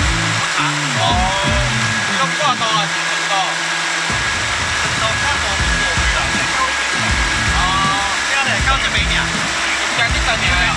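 Suzuki outboard motor running steadily, pushing a small metal boat along under way, heard under men's voices.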